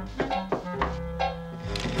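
A few knocks on a wooden door, a cartoon sound effect, in the first second and a half, over background music with held notes.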